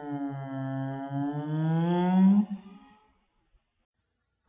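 A young woman's long, drawn-out yell on one open vowel. It grows louder and rises a little in pitch, then breaks off about two and a half seconds in.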